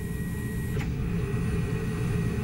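Lung bioreactor machinery running with a steady mechanical hum and a faint high whine, its pumps moving air in and out of a lab-grown lung in a glass chamber. A brief click a little under a second in.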